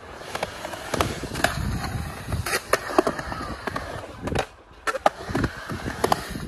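Skateboard wheels rolling on a concrete skatepark surface, with repeated sharp clacks of the board and trucks against the concrete and a short quieter lull about four and a half seconds in.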